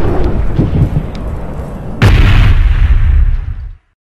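Rumble of a large explosion with scattered debris crackle, then a second sharp blast about two seconds in whose deep rumble dies away and cuts off to silence just before the end.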